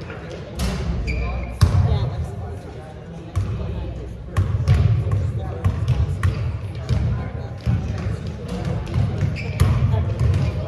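Several basketballs bouncing on a gym floor in irregular, overlapping thuds as children dribble and shoot, echoing in a large gymnasium. Voices talk in the background.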